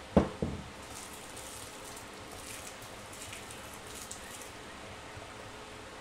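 Two sharp knocks just after the start, then a steady crackling fizz from a flameless heating bag reacting in water inside a lidded container, heating the water to a boil and giving off steam.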